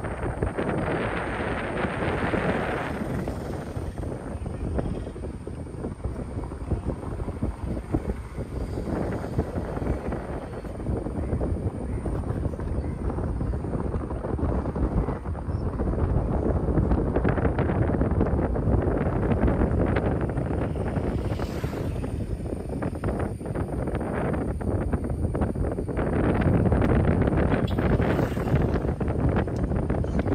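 Steady road and wind noise of a moving vehicle, with wind buffeting the microphone; it swells louder twice in the second half.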